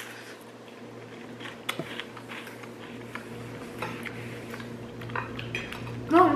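Someone biting into and chewing a mini garlic bread, with a few sharp clicks and clinks of tableware over a steady low hum.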